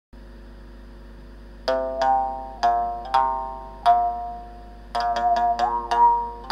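Gabonese moungongo (mongongo) mouth bow: its single string struck with a thin stick, each strike a twangy note whose stressed overtone moves as the mouth resonator changes shape. Five spaced strikes begin a little under two seconds in, then a quick run of strikes near the end.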